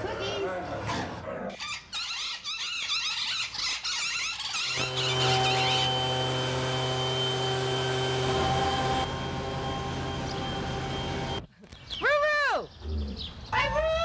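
A burst of quick high bird chirps, then a steady hum for about seven seconds. Near the end comes a loud bird call that rises and falls in pitch, and a second one follows at the very end.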